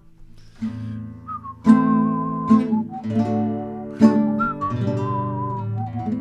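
Classical guitar strummed in a few slow chords, with a whistled melody over them that holds each note with a slight waver.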